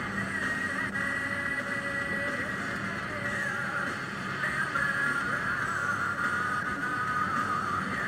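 Music playing on the car radio, heard inside the moving car's cabin over the low, steady noise of the drive.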